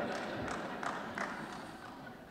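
A quiet pause with faint room tone, a soft thump about half a second in and a few light taps, from a hand moving on a wooden lectern.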